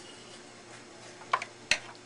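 Two sharp clicks about a third of a second apart, the second louder, from pottery tools being handled and set down in a potter's wheel's plastic splash-pan tray, over a faint steady hum.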